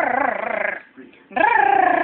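Small puppies growling in play: two high-pitched, rough growls, the second starting about a second and a half in and drawn out longer.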